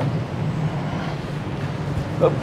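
Steady low drone of a yacht-transporter ship's machinery while under way at sea.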